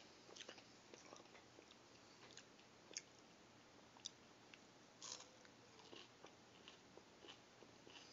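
A person chewing a crunchy fried breakfast bite, with faint, irregular crunches.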